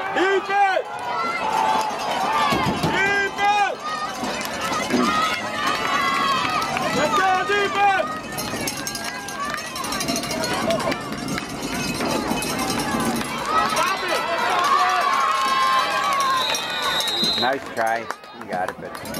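Several people shouting and talking over one another: football players on the sideline and spectators. Near the end a short high whistle sounds, a referee's whistle as the play ends.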